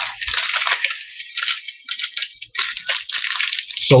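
Crinkling and rustling of trading-card pack wrappers and cards being handled, in irregular bursts with a brief lull about two and a half seconds in.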